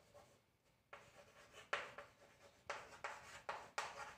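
Chalk scratching and tapping on a chalkboard in short strokes as words are written, starting about a second in.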